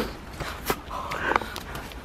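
A few scuffs and sharp knocks of someone climbing down a rough stone wall, with a brief vocal noise from a climber about a second in.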